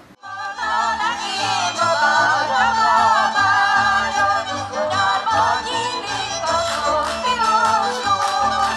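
Hungarian folk music: singing over a string band with a walking bass line, starting a moment in after a cut.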